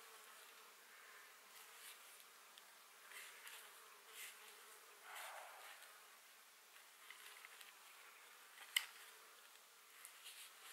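Faint scraping of a knife blade, a few soft separate strokes, with one sharp click near the end.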